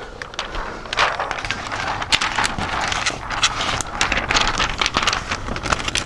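Thin plastic window tint film rustling and crackling irregularly as it is handled and laid onto wet car window glass.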